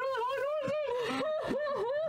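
A person's high-pitched, wordless vocal sound that wavers up and down repeatedly.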